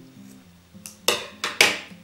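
Scissors snipping through yarn: a few quick, sharp snips about a second in, over quiet background music.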